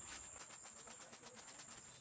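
Near silence: a faint, steady high-pitched insect drone, with soft rubbing as hands scrub shampoo lather through wet hair.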